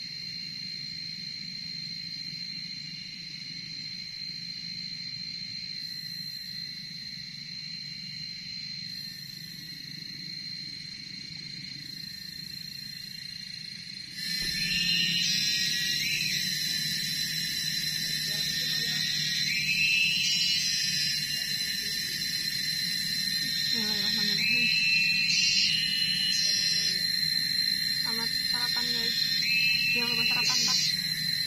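A steady high-pitched insect drone. About halfway through it gets louder, and a rising call joins in, repeating every four to five seconds.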